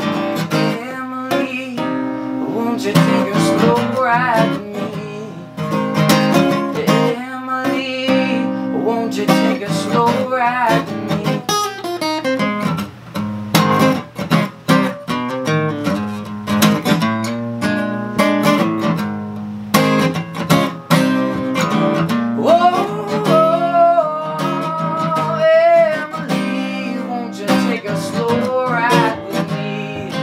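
Steel-string acoustic guitar played live, strummed chords mixed with picked melodic runs in a steady rhythm.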